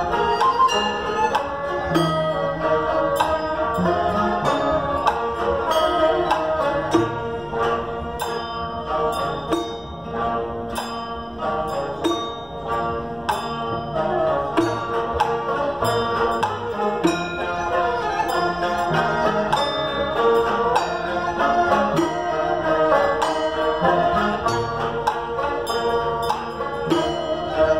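Live Naxi ancient music ensemble playing a traditional piece on bowed fiddles, a plucked zither and lutes, with frequent tinkling percussion strokes over the sustained melody.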